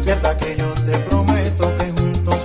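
Instrumental salsa music in a DJ mix: a bass line moving between held low notes under percussion and pitched instruments, with no singing.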